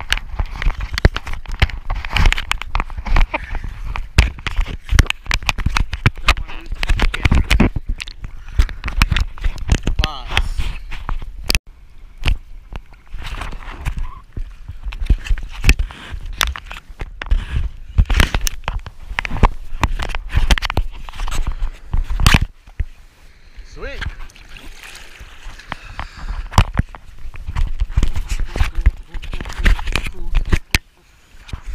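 Seawater sloshing and splashing against a surfboard-mounted camera as the board is paddled, with many sharp knocks and a low rumble of water buffeting the microphone. The noise eases briefly twice, about twelve seconds in and again past twenty-three seconds.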